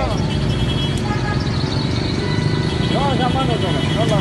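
Street traffic noise with a vehicle engine running steadily underneath, and voices calling out about three seconds in.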